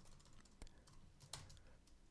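Faint computer keyboard keystrokes: a handful of scattered key presses in a quiet room.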